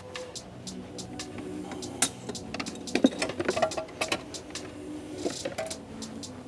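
A BMW S58's factory plastic airbox and intake tube being unclipped and pulled off by hand: scattered sharp plastic clicks and knocks, with a louder click about two seconds in and a cluster around three seconds.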